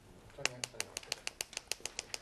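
A rapid, even run of light clicks, about eight a second, starting about half a second in.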